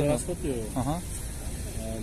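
Men's voices talking in short phrases over a steady background hiss and rumble.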